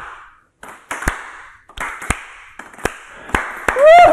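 Hand claps: about eight single sharp claps in an uneven rhythm, each with a short ring of room echo.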